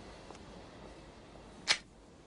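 A single short, sharp swish near the end, over a faint steady background.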